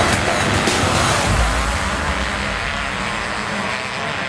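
A pack of motocross bikes' engines running hard as they pull away from the corner, the combined noise slowly fading as they move off.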